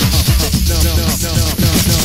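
Hip hop remix playing: a rapped vocal over a steady drum beat and heavy bass.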